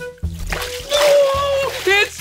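Pool water splashing as a swimmer climbs out up the steps, over background music.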